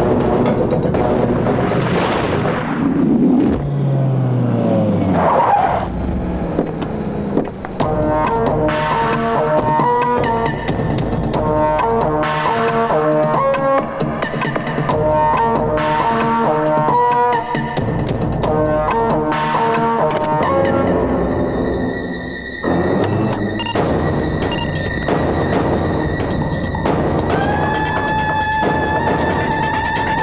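Film background score: music with sweeping swells at first, then repeated rhythmic chords and percussion. About two-thirds of the way through it drops away to sparser, held high notes.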